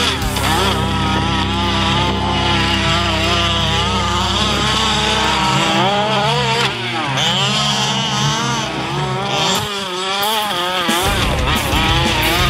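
Two-stroke petrol engine of a 1/5-scale HPI Baja RC truck revving up and down repeatedly, its pitch rising and falling as the throttle is worked, with one deep drop and climb about midway.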